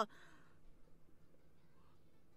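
Quiet room tone, with a faint breath out from the reactor just as her speech stops.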